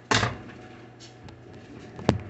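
A single loud knock about a tenth of a second in, followed by a few faint small clicks.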